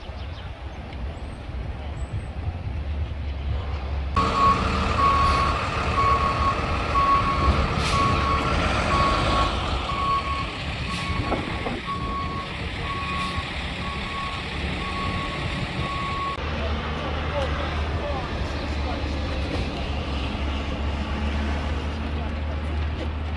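A vehicle's reversing alarm beeping at an even pace, about one single-pitched beep every two-thirds of a second, over a steady rumble of city street traffic. The beeping starts about four seconds in and stops about sixteen seconds in.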